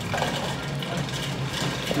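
Restaurant room noise: a steady low hum with faint, indistinct background voices.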